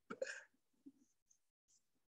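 A short vocal sound from the reader, about half a second long, as he stumbles in his reading, then near silence with one faint click.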